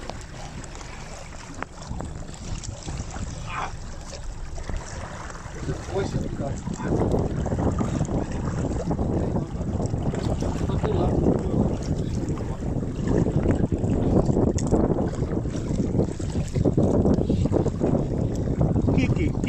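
Wind buffeting the microphone over rushing water noise out on a jet ski at sea, stepping up louder about seven seconds in.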